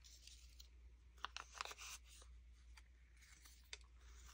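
Faint rustling and a few light ticks of small paper stamps being shuffled in the hands and set down on a board, over a low steady hum.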